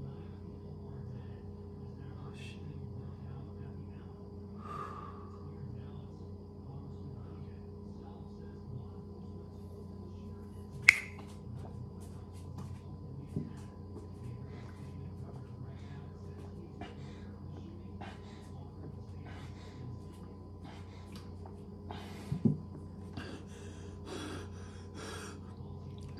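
Steady low room hum broken by a single sharp click about eleven seconds in and a couple of softer knocks, then a run of heavy breaths and gasps near the end from a man whose mouth is burning from a shot of hot sauce.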